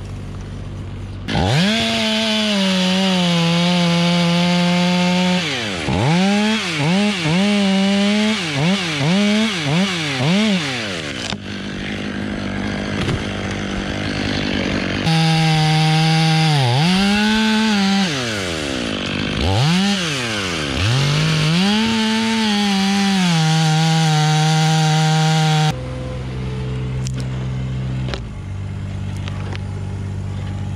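Stihl two-stroke chainsaw revved up about a second in and run at high speed cutting through a pine trunk. Its pitch rises and falls quickly several times as the throttle is blipped, and it dips and recovers under load in the cut. It drops to a lower, steady running sound about four seconds before the end.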